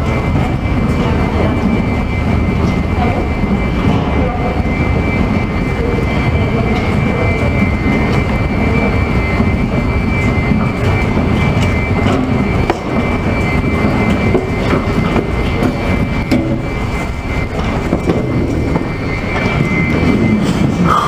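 Escalator running: a steady mechanical rumble with a thin, steady high-pitched whine over it.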